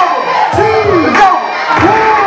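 Crowd of spectators cheering and shouting over hip hop music from a DJ.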